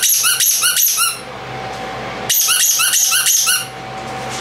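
Squeaky dog toy squeezed rapidly, about five high squeaks a second, in two runs of about a second each with a pause between.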